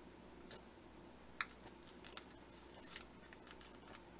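Faint crisp ticks and rustles of origami paper being pressed and flattened between the fingers, a few scattered ones, the sharpest about a second and a half in.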